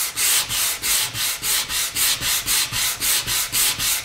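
Sandpaper on a hand sanding block rubbed back and forth over a black-stained quilted maple guitar top, in quick even strokes about three a second. The sanding takes the dark stain back off the raised figure so the light wood shows against the dark.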